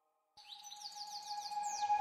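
Background music track fading in about half a second in: a held tone under quick, falling chirps, about six a second, growing steadily louder.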